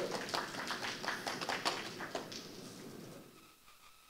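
A small audience clapping, a run of scattered hand claps that thins out and dies away about three and a half seconds in.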